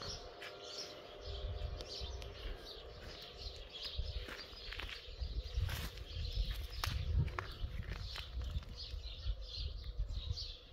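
Small birds chirping again and again over a low outdoor rumble, with a few sharp clicks in the second half.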